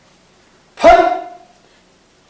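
A man's single sharp, forceful shout of the syllable 'Phat' about a second in, fading over roughly half a second. In phowa practice this is the cry that marks the ejection of consciousness through the crown of the head.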